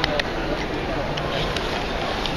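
Background voices chattering, with two quick sharp clicks at the start as the plastic lid of a Turn Sharp rotary-cutter blade sharpener is pressed onto its base.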